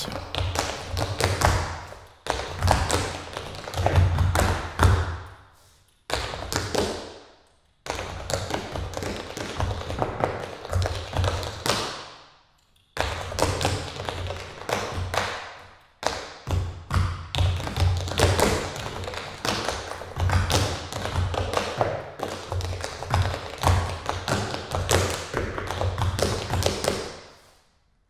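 Tap shoes striking a wooden floor in fast, rhythmic phrases of sharp clicks and heel thuds, broken by several short pauses. Each phrase rings on briefly in the bare room.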